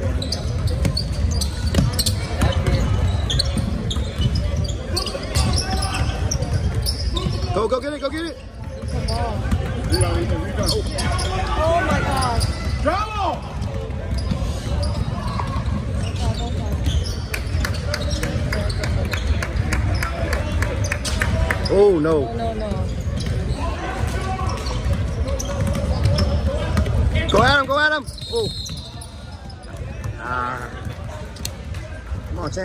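Basketball game in a large gym: a basketball bouncing on the hardwood court as players dribble, with shouted voices from players and spectators, and several brief curving high squeals over the steady rumble of the hall.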